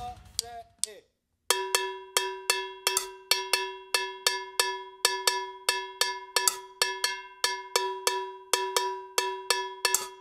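Two drum-kit cowbells, a main and an auxiliary, struck alone in a fast syncopated pattern that starts about a second and a half in. This is the cowbell part of a linear drum groove, heard with the rest of the kit taken out.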